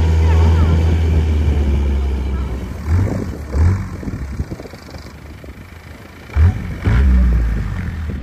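Long-tail boat engine running with a steady low drone as the boat crosses open water; the drone drops back through the middle and comes up strong again near the end.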